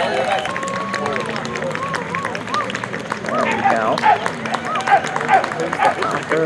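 Voices talking in the background, with no words clear enough to make out, over a low steady hum.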